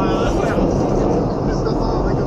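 Steady rumble and rush of the Pilatus Bahn cogwheel railcar on the move, with people's voices over it near the start and near the end.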